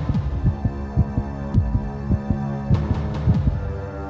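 Film-score tension sound: low thumps in pairs, like a heartbeat, over a steady low drone.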